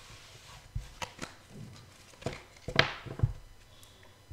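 Tarot cards slid across a cloth-covered table and gathered up, then a series of sharp taps and clicks as the cards are squared and handled, the loudest a little before three seconds in.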